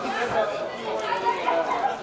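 Several people's voices talking and calling over one another, no single speaker standing out.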